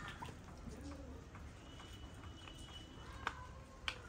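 Faint quiet ambience with a bird cooing softly in the first second, then two sharp clicks near the end as a metal spoon knocks against a small porcelain cup while scraping it out over a clay cooking pot.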